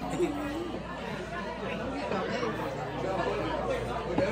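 Indistinct chatter of many voices in a busy restaurant dining room, with no single clear speaker.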